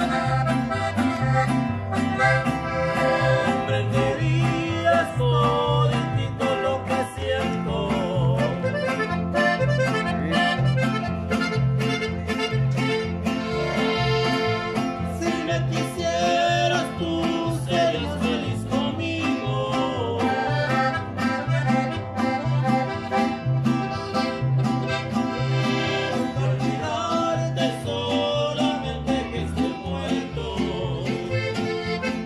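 Live accordion and guitars playing an instrumental tune, with a steady alternating bass line under the accordion melody.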